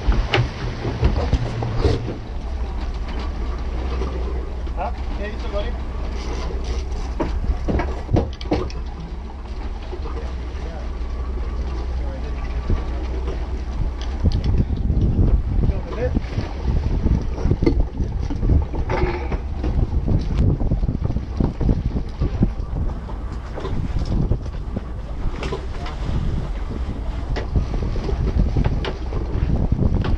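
Outboard motor running on a fishing boat, its low hum steady under wind noise on the microphone and water noise, with the engine note dropping about two seconds in. Scattered knocks and clatter of gear on the deck.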